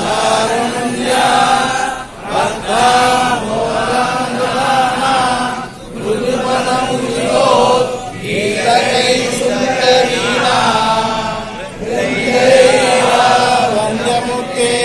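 A large group of men chanting Sanskrit verses in unison from their texts: a parayana recitation. The chant goes in phrases, with brief breaths between them about every two to four seconds.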